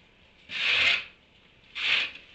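Rhythmic rasping rustles of dry hay as donkeys pull mouthfuls from a hay feeder: one longer rustle about half a second in and another near the end.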